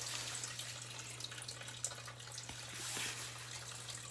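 Water trickling and dripping as fish are tipped from a plastic bag into a tub of water, over a steady low hum.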